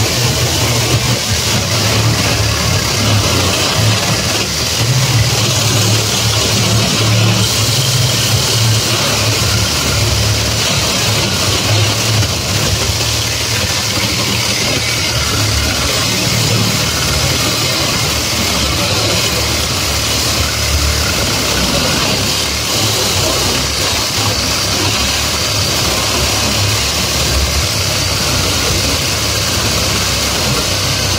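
Cordless battery-powered saw running steadily, cutting across the steel wires of a roll of welded grid-wire fencing.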